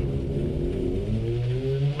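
Volkswagen GTI rally car's engine accelerating hard from a standing start, heard from inside the cabin, its pitch rising steadily with a brief dip near the end.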